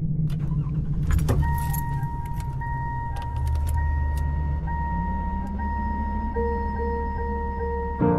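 Car interior sounds: a jangle of keys and a few clicks in the first second or so, then a car's warning chime ringing steadily over the low hum of an idling engine. A soft held tone joins near the end.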